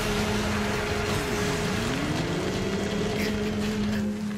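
Animated battle sound effects: a loud, steady rush of noise over a low steady hum, with one tone that dips in pitch and climbs back about a second and a half in.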